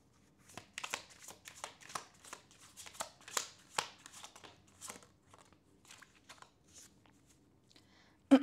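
Tarot cards being shuffled and handled: a run of quick, irregular papery flicks and taps that starts about half a second in, is loudest in the first half and thins out toward the end.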